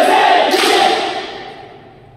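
A group of Buddhist monks singing together in unison in a large hall, with a sharp burst of noise about half a second in; the voices then fade away.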